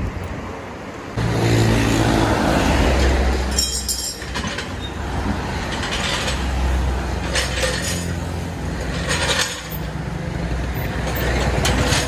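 Road traffic passing close by, cars and trucks with a low engine rumble that jumps louder about a second in and stays loud, with a few short clicks heard over it.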